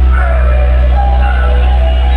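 A large DJ speaker-box sound system playing music very loudly, with a deep, steady bass note under a melody.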